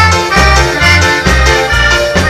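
Live dance-band music with an accordion playing steady, held chords over a bass note on every beat. No singing is heard in this passage.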